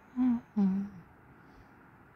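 A person humming two short wordless notes in the first second.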